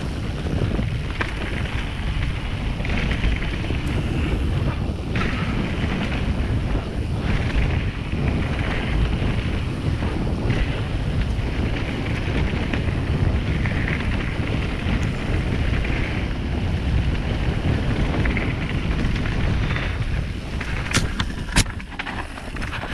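Wind rushing over the microphone of a camera riding on a moving mountain bike, with the rumble of tyres rolling over a dirt singletrack trail. A few sharp clicks come near the end.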